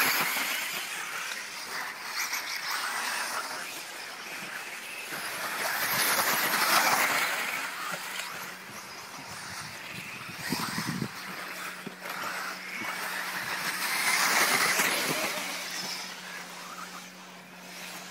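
Electric 1:10-scale 4WD off-road RC buggies racing on a dirt track: the noise of their motors and tyres rises and falls as the cars pass close, loudest near the start, about six to seven seconds in, and around fifteen seconds in.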